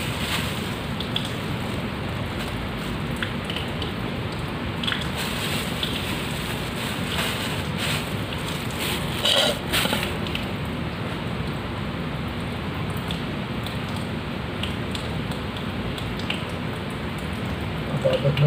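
Tap water running steadily and splashing into a sink, with a short clatter about nine and a half seconds in.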